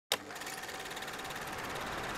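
Film projector sound effect: a click at the start, then a steady, fast, even mechanical clatter.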